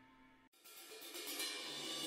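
Meditative music fading out to near silence. About half a second in, a soft, high metallic cymbal shimmer swells up, the opening of the next track.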